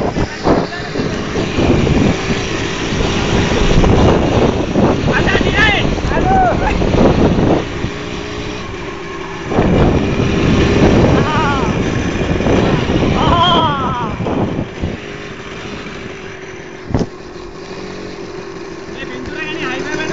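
A motorcycle riding along with a steady engine drone under heavy wind buffeting on the microphone, and young riders' voices shouting and whooping on and off. There is a single sharp knock late on.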